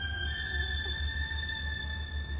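Background music: steady held high tones that step up slightly about a quarter-second in, over a pulsing low drone.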